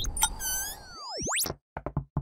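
Animated title sound effects: a rumbling hit fades out, a bright ringing tone comes in around half a second, then a cartoon boing-like sweep dips and shoots steeply up in pitch. A quick run of short pops follows near the end.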